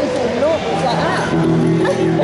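Voices talking in a reverberant hall between songs, with a steady low note from an amplified instrument coming in about a second in.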